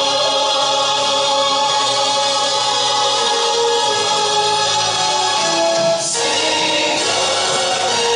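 Congregation singing a gospel worship song together, many voices on sustained held notes.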